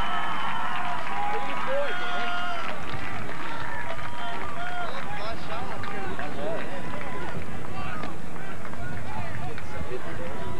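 Several voices of soccer players and onlookers shouting and calling over one another, with scattered short knocks.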